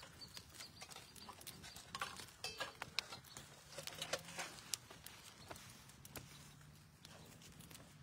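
Faint, irregular taps and knocks with some rustling: people shifting and stepping about on a mat-covered wooden deck.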